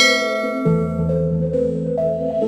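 Background music of steady synth notes, with a bell-like chime ringing out at the start and fading over about a second and a half, and a low bass note coming in partway through.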